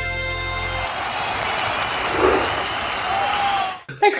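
Video transition stinger: a held electronic chord that stops about a second in, followed by a swell of applause-like noise that cuts off sharply just before the end.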